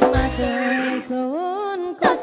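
Live band music with electronic keyboards. Low drum beats stop about half a second in, leaving held chords and a wavering, bending melody line, and the beat comes back at the end.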